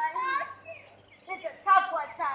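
Children's voices calling out while playing: a few short, high-pitched shouts, the loudest near the end.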